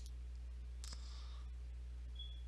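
A steady low electrical hum fills a pause in the talk. One faint sharp click comes just under a second in, followed by a soft short hiss.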